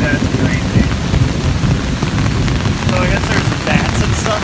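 Steady rain falling on an umbrella held overhead: a dense stream of small drop hits over a low rumble.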